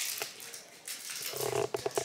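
Rustling and handling noise as the handheld camera is fumbled with, then near the end a short hum-like voice sound and a few sharp clicks.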